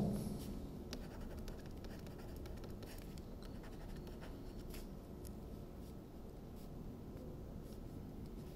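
Faint tapping and scratching of a stylus writing on a tablet screen, a scatter of light ticks over a low room hum.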